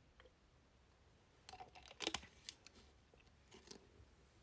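A plastic water bottle crinkling and clicking as it is handled during a drink: a few faint crackles and clicks, loudest about two seconds in.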